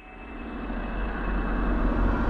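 Cinematic riser sound effect: a rushing swell of noise that fades in from silence and grows steadily louder, building toward a hit.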